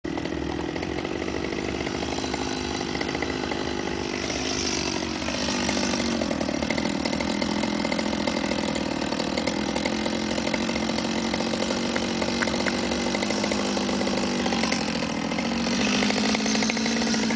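Chainsaw running and cutting into the stubs at the crown of a pollarded willow, its engine note dipping in pitch about five seconds in.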